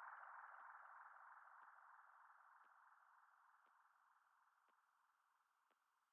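The fading tail of an electronic psytrance track: a very faint mid-pitched electronic tone dying away, with a soft tick about once a second.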